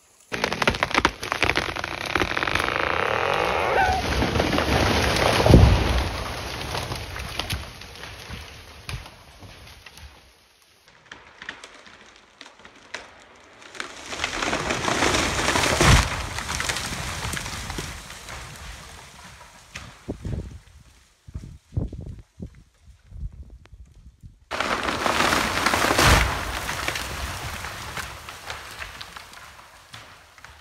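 A big white fir falling, heard three times in a row: a rushing crash through the branches that builds to a heavy impact on the ground, followed each time by a patter of falling branches and debris.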